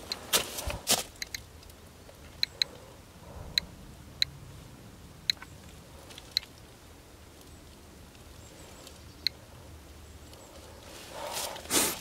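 Handheld Geiger counter beeping once per detected count: about a dozen short, high beeps at random, uneven intervals, a sparse rate that means only background-level radiation at this rock. A few handling knocks in the first second.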